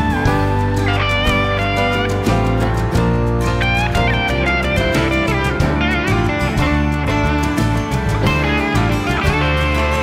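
Instrumental break of a blues-soul band: a lead electric guitar plays bent, wavering notes over bass guitar and drums.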